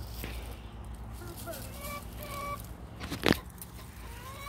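Chickens clucking faintly, with a few drawn-out calls in the middle, over rustling of dry brush; one sharp snap of dry twigs about three seconds in is the loudest sound.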